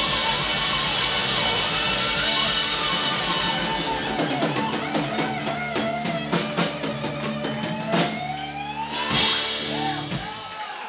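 Live rock band of electric guitars, bass and drums playing the closing bars of a song: a few seconds of full playing, then a run of drum hits and cymbal crashes under bending, rising electric guitar notes, with a final crash near the end.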